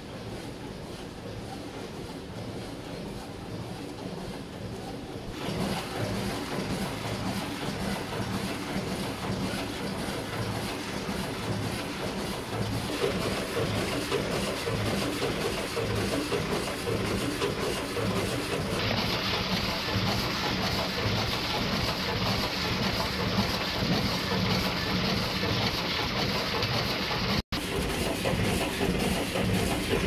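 Multihead weigher and vertical form-fill-seal bagging machine running in production, a steady mechanical clatter with a regular beat, growing louder in steps.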